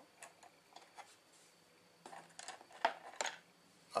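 Faint, scattered light clicks and taps of small hobby tools and tiny 3D-printed plastic lamp parts being picked up and handled over a cutting mat, with a cluster of sharper clicks in the second half.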